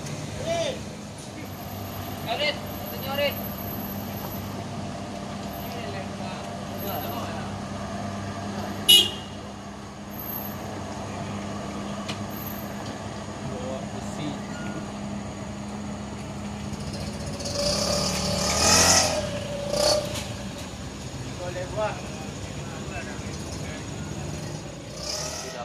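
Steady low hum of vehicle engines running in slow, queued traffic, with short distant calls of voices now and then and a sharp click about nine seconds in. A louder rush of noise swells and fades about eighteen seconds in.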